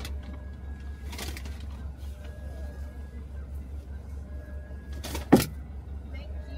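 Car engine idling with a steady low hum. A short sharp noise comes about a second in, and a louder one near the end.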